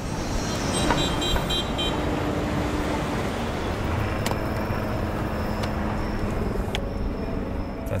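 City street traffic noise: cars running and passing in a steady din, with a car horn sounding briefly about a second in.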